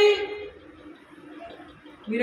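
A woman's voice through a microphone and loudspeaker, holding a drawn-out vowel that fades out about half a second in, followed by a pause with only faint room noise.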